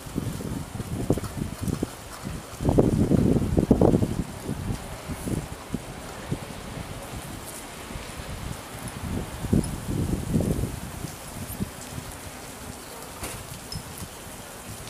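Wind buffeting the microphone in irregular low gusts, strongest about three seconds in and again around ten seconds.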